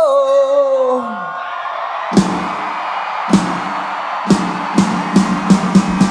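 Live rock band: a held, shouted vocal note slides down in pitch and ends about a second in. Crowd cheering follows, with single drum hits that come closer and closer together, building into the full kit.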